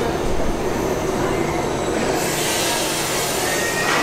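Expedition Everest roller coaster train running through its loading station: a steady rumble of wheels on track. A hiss joins about halfway, with a faint rising squeal near the end.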